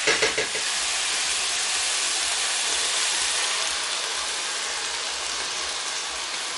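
Browned minced beef, onion and garlic sizzling in a hot frying pan as red wine is poured in: a steady hiss that eases slightly toward the end.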